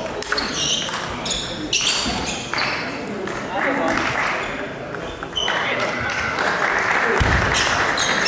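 Table tennis balls clicking off bats and tables, a run of sharp ticks with a short ring, over voices in a large hall. The background grows thicker and steadier from about five and a half seconds in.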